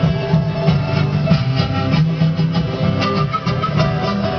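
A live band playing, with a steady beat and string instruments.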